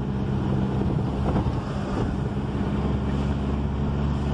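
Car engine and road noise heard from inside the cabin while driving: a steady low hum with an even rush of tyre and wind noise over it, unchanging throughout.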